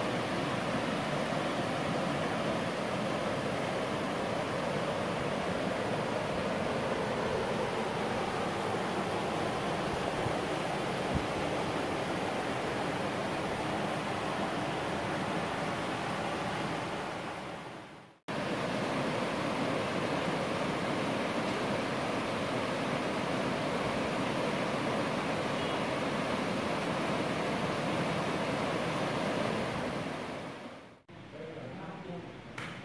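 Rushing water of a rocky mountain stream tumbling over small cascades: a steady, even noise. It fades out to silence about eighteen seconds in, then cuts straight back in.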